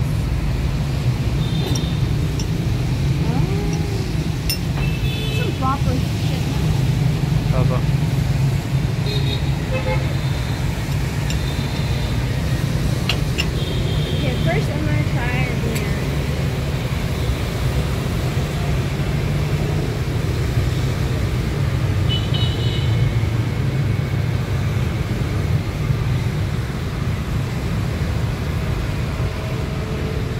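Steady street traffic drone with short vehicle horn toots, several in the first half and one more about two-thirds through.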